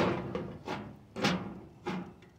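A run of four booming thuds about half a second apart, each ringing out briefly before the next.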